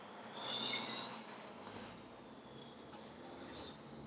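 Faint steady noise inside a car cabin, with a brief faint high squeak about half a second in.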